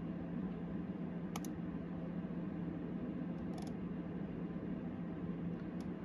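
Steady low hum of a running desktop computer, its CPU just set to mining, with three faint mouse clicks about one and a half seconds in, around three and a half seconds, and just before the end.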